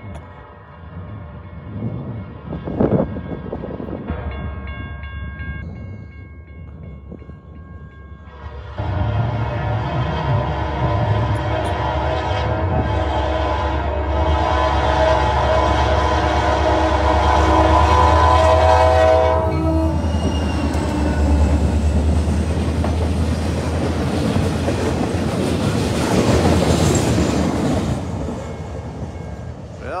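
Diesel freight locomotive horn sounding for a grade crossing: faint at first, then loud and held for about ten seconds before it cuts off about twenty seconds in. The locomotive then runs past, followed by the wheel clatter of a short train of log cars, which fades near the end.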